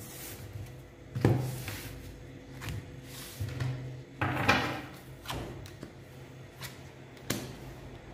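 Tarot cards being cut and laid down on a wooden table: a series of soft taps and slaps, about six, spaced a second or so apart.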